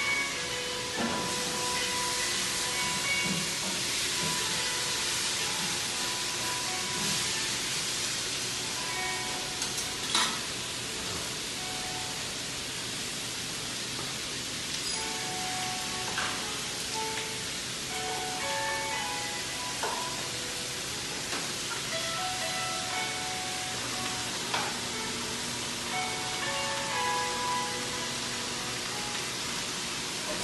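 Vegetables stir-frying in a hot wok: a steady sizzle, with a few sharp clicks of the stirring utensil against the pan.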